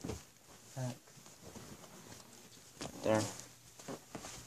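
Two short spoken words with quiet room tone and faint handling noise between them.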